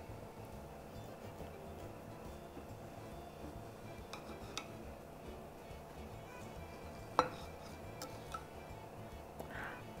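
Faint background music with a few soft clinks of a knife and cake server against a ceramic cake stand as a sweet bread is cut and a slice lifted out; the sharpest clink comes about seven seconds in.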